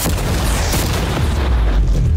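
A cannon firing: a boom right at the start, followed by a long low rumble that swells again near the end.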